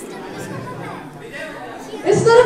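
Low chatter of many people talking at once in a large hall, with no single voice standing out.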